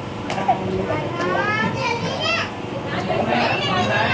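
Children's voices and chatter from several kids playing together, high-pitched and overlapping, with one sharp click about half a second in.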